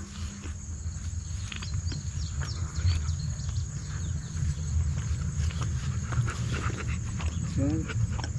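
Insects, crickets by the sound, chirring steadily in the background as one continuous high note, over an uneven low rumble; a voice comes in near the end.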